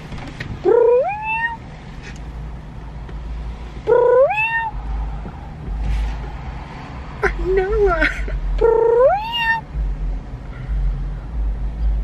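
A person imitating a cat, three long meows each rising in pitch and then holding, a cat call meant to lure a cat over.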